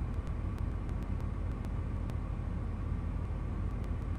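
A steady low background rumble with a few faint clicks, in a pause between spoken sentences.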